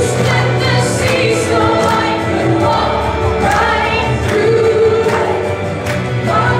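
Christian worship song sung by several voices over instrumental accompaniment with sustained low bass notes.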